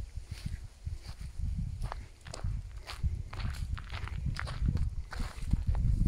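A person's footsteps at a walking pace over gravel and grass: a run of irregular soft thuds with sharper crunches among them.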